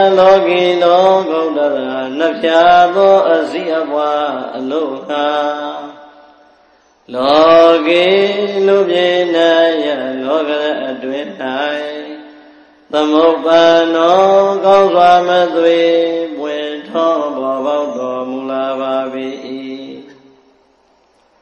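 Buddhist devotional chanting by a single voice, in three long, slow, sustained phrases. Each phrase fades at its end, with short pauses for breath about six and twelve seconds in.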